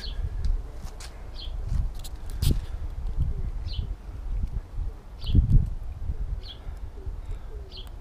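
Birds calling: a short high chirp repeating about every second and a half, with faint low cooing in the last couple of seconds. Under it runs a low rumble with two dull thumps, about two and a half and five and a half seconds in.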